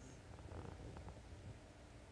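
Near silence: faint low room hum.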